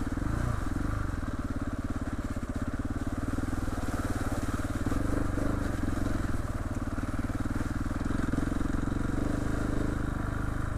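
Trail motorcycle engine running steadily at low revs as the bike rides along a muddy, rutted lane.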